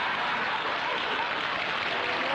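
Studio audience applauding, a dense, steady clatter of many hands.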